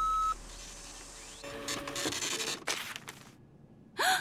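Cartoon sound effects of a weather machine: a short electronic beep, then a clicking, whirring printout as a paper forecast slip feeds out, stopping a little past three seconds in.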